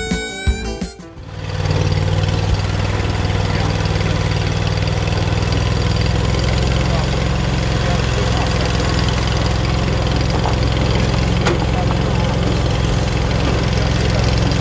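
Music fades out in the first second, then a utility vehicle's engine runs steadily as it drives along a dirt track, an even low drone.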